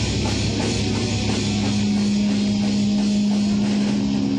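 Live rock band playing: distorted electric guitars over a drum kit. In the second half a single low note is held steadily under the band.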